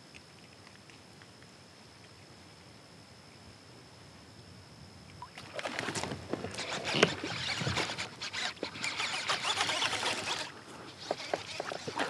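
Kayak paddle strokes in calm water: the blades dipping and splashing, with drips and knocks, starting about five seconds in after a quiet stretch and easing off near the end.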